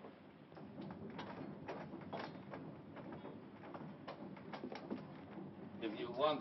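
Footsteps: irregular light knocks and clicks, several a second, over a faint steady background hum.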